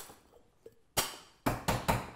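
Gold Barfly tin-on-tin cocktail shaker being closed: a single sharp metal knock about a second in, then a quick run of three or four knocks near the end as the top tin is tapped down to seal before shaking.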